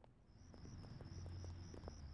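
Faint crickets chirping in an even pulsing rhythm, about three chirps a second, over a low steady hum: a night-time outdoor ambience.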